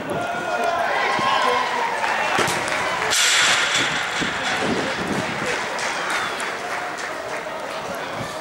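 Several voices shouting and calling over one another on a rugby pitch, none clearly intelligible, with a sudden burst of hissing noise about three seconds in.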